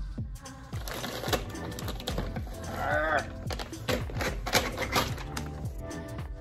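Small desktop inkjet printer jammed on a sheet of paper: irregular clicking and rattling of the feed mechanism and the paper being tugged free, over background music.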